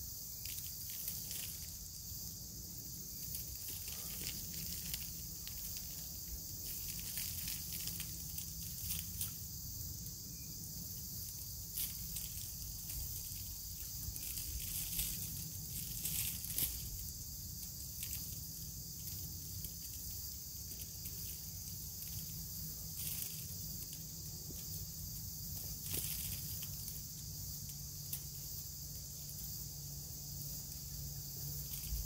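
Steady high-pitched chorus of insects such as crickets, with scattered soft rustles and clicks as hands handle soil and roots.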